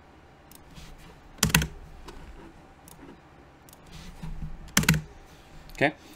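Computer keyboard being typed on: a few scattered key clicks, with two louder, heavier key strikes about a second and a half in and near five seconds in.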